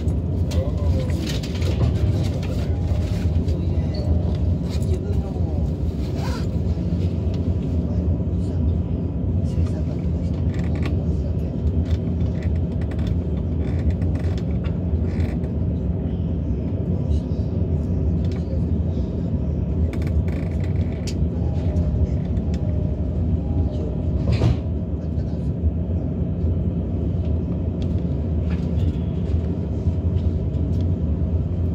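Steady low hum and rumble of a commuter train standing at a station, heard from inside a double-decker Green car, with faint voices and a few short knocks over it.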